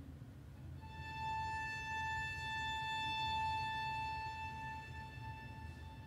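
Soft classical string duo passage: a lower note dies away, then a single high bowed note is held for about five seconds and fades near the end, the closing sound of a slow movement.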